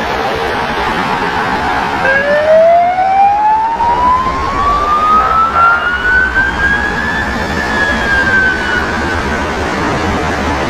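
Police siren winding slowly up in pitch from about two seconds in for around five seconds, then easing slightly down near the end, over steady traffic noise.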